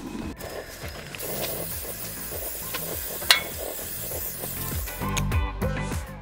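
Background music over a steady hiss of pork chops frying on a propane griddle, with one sharp click about three seconds in.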